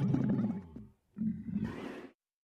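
Camel grunting: a long, low, rumbling grunt fades out within the first second. After a short gap comes a second, shorter grunt that ends in a hiss.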